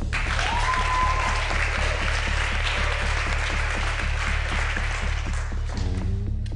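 A group applauding over background music with a steady beat, with a short high-pitched whoop about half a second in. The clapping stops shortly before the end while the music goes on.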